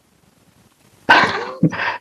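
A dog barking: a sudden loud bark about a second in, then a shorter one just after, picked up on a video-call participant's microphone.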